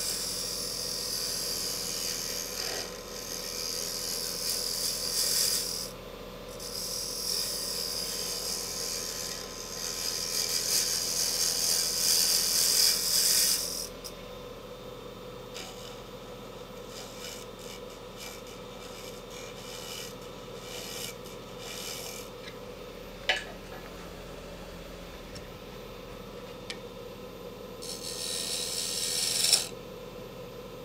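A carbide-tip scraper cutting a spinning ebony disc on a Robust wood lathe, a scraping hiss in long passes for about the first half, with one short break. The lathe then runs on with a steady hum, and a brief cut comes again near the end.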